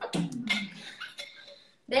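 A person's voice, broken up and breathy, mixed with a few sharp clicks; it fades out about a second and a half in.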